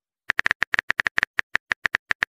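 Phone keyboard typing sound from a texting-story app: a quick, slightly uneven run of short taps as a message is typed. The taps begin about a third of a second in.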